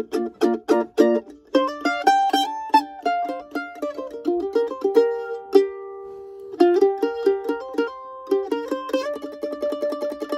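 Mandolin played solo: it opens with quick repeated picked strokes, about four a second, then moves into single melody notes, with one note left ringing for over a second around the middle before the playing picks up again.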